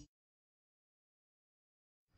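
Dead silence: the audio track drops out entirely just after a music track cuts off at the very start.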